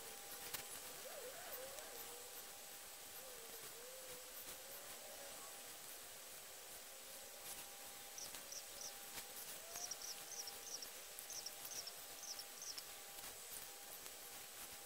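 Faint background with distant chirping: a run of short, very high chirps, mostly in pairs, through the second half. A faint wavering whistle comes and goes between about one and five seconds in, over a thin steady hum.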